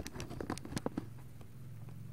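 A quick run of light taps and clicks during the first second, then a low steady hum.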